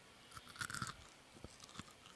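A dried cricket being chewed close to a microphone: faint, crunchy crackles in two small clusters.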